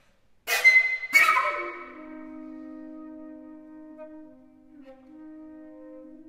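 Two flutes playing contemporary music: two sharp, breathy accented attacks about half a second apart, then both flutes holding low sustained notes together, one of them changing pitch a little before the end.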